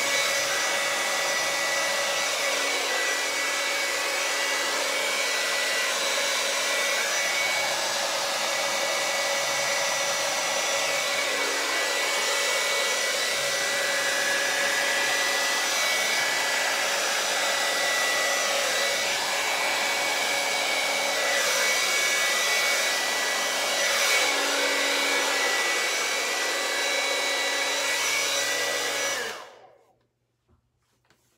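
Handheld hair dryer running steadily with a motor whine, blowing wet acrylic paint across a canvas; the sound cuts off suddenly near the end.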